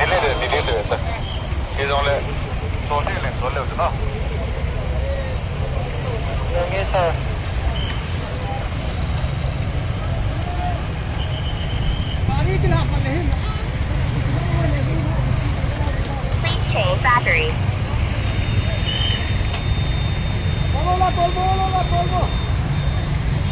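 Steady low rumble of vehicle engines running (backhoe loaders and motor scooters), with short calls and voices from people now and then.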